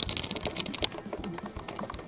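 Laptop keys clicking in quick, irregular succession as a budgerigar moves about on the keyboard.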